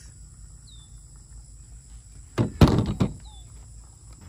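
A short, loud clatter of knocks about two and a half seconds in: long-handled Fiskars loppers being set down on a plastic folding table.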